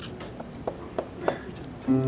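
Live band starting a song: a few short taps about a third of a second apart, then near the end the band comes in with a loud sustained chord.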